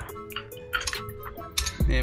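Instrumental music: a sparse beat of ticking clicks over held tones. A deep bass note comes in near the end.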